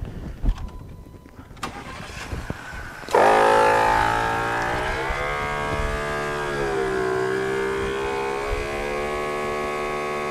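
A portable twin-piston 12-volt air compressor (MaxiTrac 300 LPM) switches on suddenly about three seconds in and runs steadily while inflating a tire. Its pitch settles slightly lower after the start and dips briefly once.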